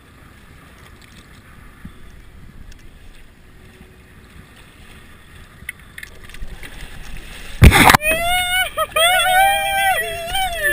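Wind and choppy water, then about three quarters of the way in a sudden loud splash as a striped bass is gaffed at the side of the boat. A man follows it with long, high, wavering yells that run to the end.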